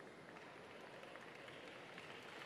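Near silence: faint, steady room tone.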